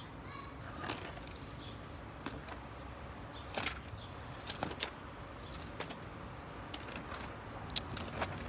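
Thin Bible pages being leafed through by hand: several brief paper flicks and rustles scattered over a low, steady background.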